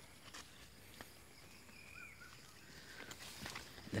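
Faint rustling of bean plants and a few small snaps as yardlong bean (sitaw) pods are picked off by hand, with a couple of faint chirps about halfway through.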